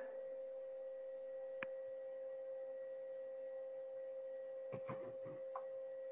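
Faint steady electronic tone, a pure hum-like whine on the video-call audio. A single sharp click comes about one and a half seconds in, and a few faint taps follow near the end.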